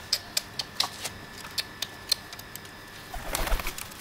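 Pigeons pecking at dried corn kernels: a run of sharp, irregular taps, then a brief scuffling burst near the end.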